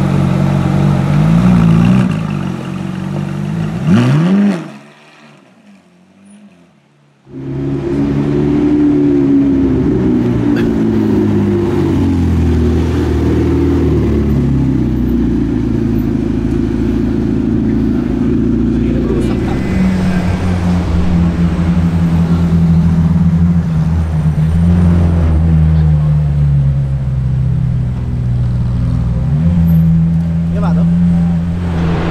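Supercar V8 engines running at low speed in street traffic. First a Ferrari 458 Italia's V8 idles and gives a rising rev about four seconds in, then cuts off suddenly. After a brief quiet spell a McLaren 12C's twin-turbo V8 rumbles along, with another deep-toned supercar engine idling in the later part.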